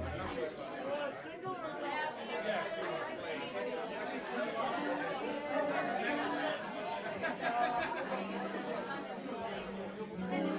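Crowd chatter: many voices talking over one another in a busy room, with no music playing.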